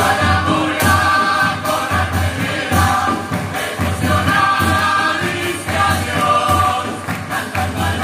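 Uruguayan murga chorus singing together in harmony, over a steady low drum beat of about two strokes a second.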